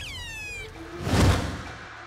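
Edited transition sound: a falling, whistle-like tone with overtones, then a whoosh that swells to its loudest about a second in and fades away.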